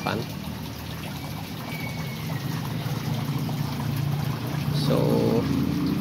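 Return water from an aquaponic grow bed pouring out of its outlet pipe into a fish pond, a steady splashing trickle.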